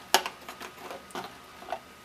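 Small plastic snap-on circuit-kit components clicking and knocking against their plastic storage tray as one is picked out: a handful of light, separate clicks, the first the sharpest.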